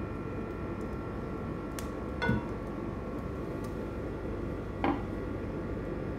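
Olive oil poured into an empty nonstick pot over a steady low hum, with two light clinks of kitchenware, one about two seconds in and one about five seconds in.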